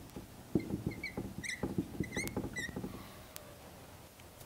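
Dry-erase marker writing on a whiteboard: quick scratchy strokes of the felt tip, with a run of short high squeaks between about half a second and under three seconds in.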